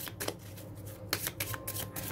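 A deck of playing cards being shuffled by hand, split into two halves: a run of irregular, crisp card clicks and flicks.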